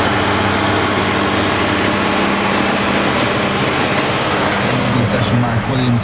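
Tractor engine running at a steady pitch, heard from inside a tractor cab, with a radio newsreader's voice coming in near the end.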